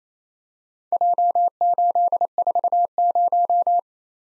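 Morse code at 28 words per minute, keyed as a single steady pitch in short and long beeps, sending the four characters J, 8, 4, 0. It starts about a second in and stops shortly before the end.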